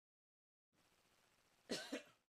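A person's short cough near the end, in two quick bursts, after near silence.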